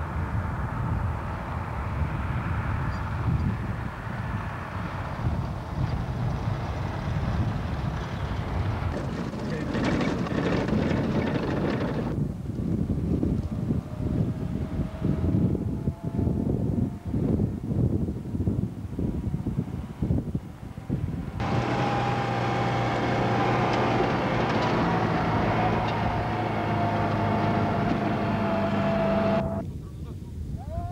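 Heavy six-wheeled truck's engine running as it drives along the road, with wind buffeting the microphone. About two-thirds of the way through it settles into a steady drone with a slightly falling whine, which cuts off abruptly near the end.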